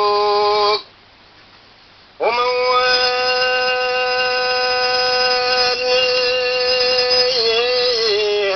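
A Tunisian song with a singer holding long sustained notes in mawwal style. One note ends early on, a short pause follows, then the voice slides up into a single long, steady note, held for about five seconds before moving back into the melody.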